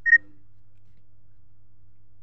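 A single short, high electronic beep right at the start, followed by a faint steady low hum.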